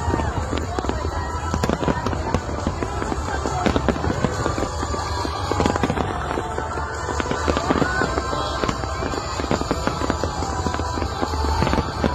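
A dense fireworks barrage: many aerial shells bursting and crackling in rapid, unbroken succession.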